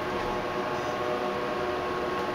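Steady hum and hiss inside the cab of a Montgomery KONE hydraulic elevator as the car sets off downward, with a few faint steady tones under the noise.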